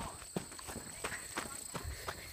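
Footsteps through grass at a brisk walk or jog, about three soft thumps a second.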